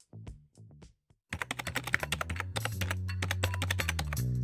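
Background music: a soft plucked tune thins out into a brief gap about a second in, then a new upbeat track starts with rapid clicking percussion over steady bass notes.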